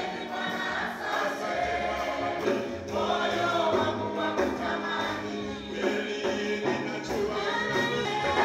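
A gospel praise song sung by a group of women's voices over a church PA, accompanied by a keyboard playing sustained bass notes.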